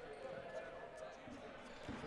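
Faint gymnasium court sound: a few soft thuds of dodgeballs on the hardwood floor over a low murmur of distant players' voices in the hall.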